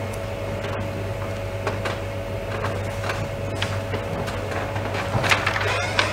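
Courtroom room tone through the microphone feed: a steady low hum and a faint steady higher tone, with a few soft, scattered clicks.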